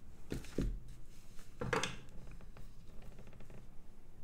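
Small handling noises as a reel of solder wire is picked at and wire is drawn from it on a work mat: two soft knocks near the start, a short rustle about a second and a half in, then a few faint clicks.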